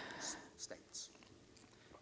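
A pause in speech: a faint breath and a few small mouth clicks, then near silence.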